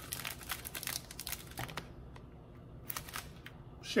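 Chocolate bar wrapper crinkling as it is unwrapped by hand: dense crackles for about two seconds, then only a few scattered crinkles.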